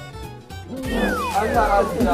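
Background music, then about a second in a loud cry that slides down in pitch, followed by more voices.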